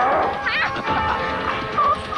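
Film soundtrack music with short animal cries over it, each gliding up or down in pitch, about half a second in and again near the end.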